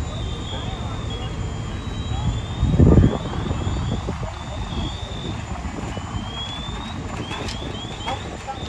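Steady low engine rumble of fire apparatus running at a fire scene, with background voices. There is a brief loud low burst about three seconds in, and faint short high chirps throughout.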